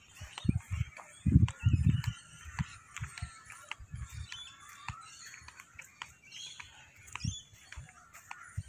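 Many birds chirping and calling at once. Low rumbling bumps come and go over them, the loudest about a second and a half in.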